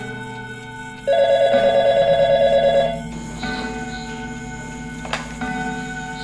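A telephone rings once: a loud, rapid trilling ring lasting about two seconds, starting about a second in, over soft background music. A sharp click follows near the end.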